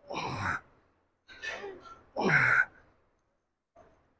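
A man breathing hard through a set of EZ-bar lying triceps extensions (skull crushers): a sharp exhale at the start, a softer breath about a second and a half in, and a louder exhale with voice in it, falling in pitch, a little past two seconds in.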